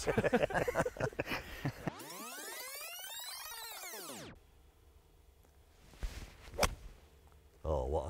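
Laughter, then a whoosh that rises and falls over about two seconds. About six and a half seconds in comes the sharp click of a three iron striking a golf ball, with a fainter tick just before it.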